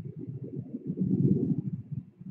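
Low rumble of jet aircraft flying overhead, swelling to its loudest about a second in.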